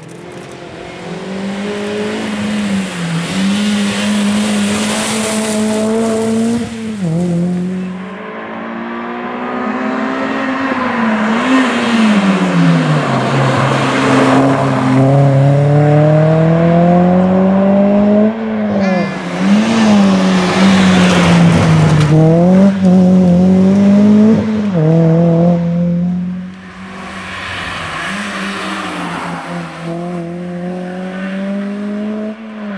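Renault Clio 3 RS rally car's 2.0-litre four-cylinder engine driven hard through bends, its note rising under acceleration and dropping on lifts and downshifts, over and over. The loudness jumps between passes, with a sharp drop about 26 seconds in.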